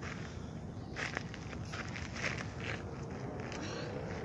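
Footsteps crunching on a dry dirt trail, irregular steps about every half second, over a steady low rumble.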